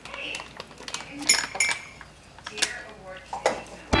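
Kitchen utensil sounds: a knife and other cutlery tapping and clinking on the counter and cutting board, an irregular scatter of short knocks and clinks.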